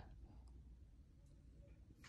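Near silence: low room tone with a couple of faint ticks.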